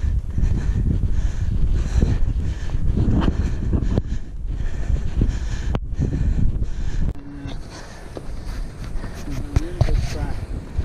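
Wind buffeting a GoPro action camera's microphone as a deep, uneven rumble, quieter for the last few seconds.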